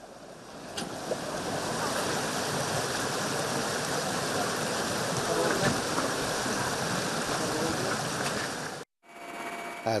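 Steady rushing outdoor noise with faint voices of people among it. It cuts off abruptly about a second before the end, and a quieter ambience with a faint steady hum follows.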